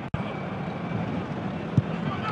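Steady stadium crowd noise from a football match broadcast, with a brief break in the sound just after the start and a short thud near the end.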